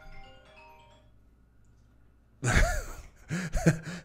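A phone ringing or alerting: a short melody of single notes that dies away within the first second. From about two and a half seconds in, a man laughs.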